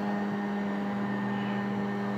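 A steady mechanical hum at one unchanging pitch, like a motor running.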